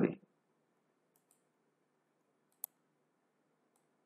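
Computer mouse clicks: a faint one about a second in, one sharper click about two and a half seconds in, and another faint one near the end.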